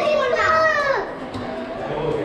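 A young child's high-pitched excited squeal, one drawn-out wordless call that slides down in pitch and stops about a second in.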